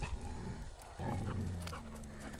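A dog growling low and steady, starting about a second in.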